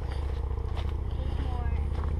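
Footsteps on a rocky dirt trail over a steady low rumble on the microphone, with faint voices in the background.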